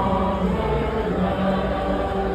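A group of voices singing together, holding notes for a fraction of a second each over a steady background of crowd noise.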